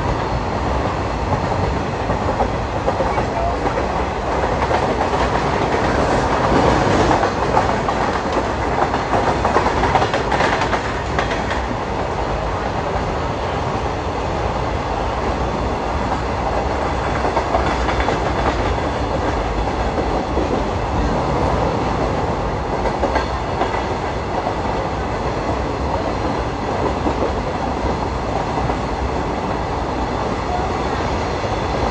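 Train running on the track, heard from an open passenger-coach doorway: a continuous steady noise of wheels on rails, swelling a little louder for a few seconds early in the stretch, beside a rake of empty covered goods wagons on the next line.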